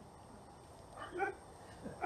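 A short pause in speech: low room tone with one brief, faint pitched sound about a second in.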